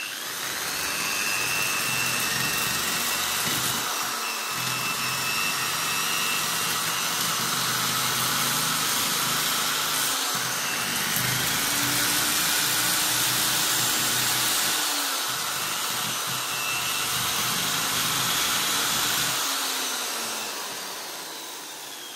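Electric drill running steadily, its spinning twist bit held sideways against a fish and scraping off the scales, a continuous whir with scraping and a slight wavering in pitch. The fish is still partly frozen on this side. The sound fades near the end.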